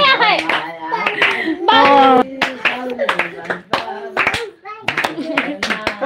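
Several people clapping their hands, quick and uneven, with voices calling out over the claps.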